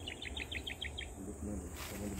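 A bird calling a quick run of about ten short, falling chirps in the first second. A low voice follows over a steady background rumble.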